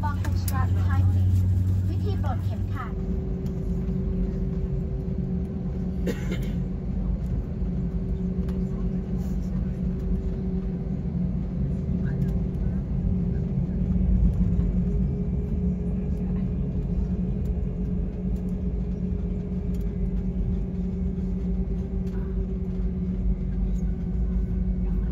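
Steady low drone inside a jet airliner's cabin as it taxis, with a steady hum tone running through it. Voices are heard in the first couple of seconds, and there is a single knock about six seconds in.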